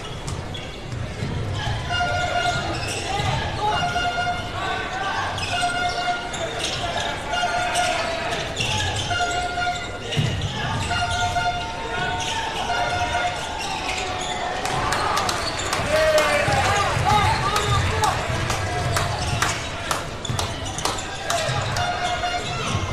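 Basketball game court sound in a large hall: a ball dribbled on the hardwood floor, with a horn sounding short repeated notes about twice a second for roughly ten seconds. Later, sneakers squeak on the court.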